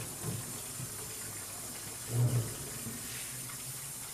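Kitchen tap running into a sink in a steady hiss, with the clatter of things being handled in it and one dull clunk about halfway through.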